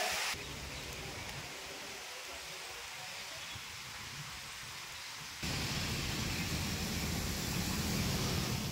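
Steady rain falling, an even hiss. About five seconds in it gets louder, with a low rumble underneath.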